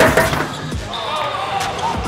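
A basketball bouncing on a hardwood gym floor during live play, with a sharp bounce right at the start, the loudest sound, and players' voices in the gym.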